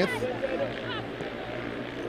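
A lull in the commentary: a steady low hum with faint background noise from the ground, after the tail of a spoken word at the very start.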